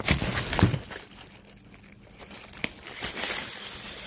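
Crinkling, rustling handling noise with a few sharp knocks in the first second, then scattered crackles.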